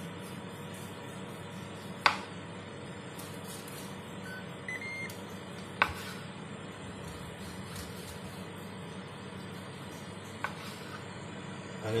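Carving knife sawing slices off a roast beef joint on a wooden chopping board, with three sharp knocks as the blade or fork meets the board, the loudest about two seconds in, over a steady low hum. A faint short beep sounds near the middle.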